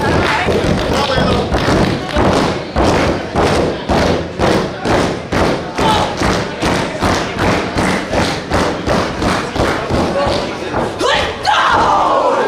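Wrestling crowd keeping a steady beat of thumps, about three a second, with voices over it and a louder shout near the end.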